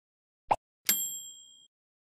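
A short click, then about half a second later a bright bell ding that rings out and fades within a second: a click-and-bell sound effect of the kind laid under a subscribe-button end screen.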